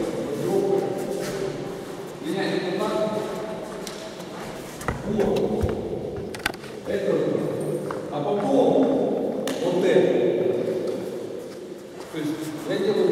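People talking in a large, echoing gym hall, with a few short knocks about five to six seconds in.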